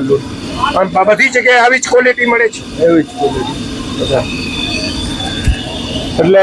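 A man talks for about two seconds, then steady background noise with no distinct event.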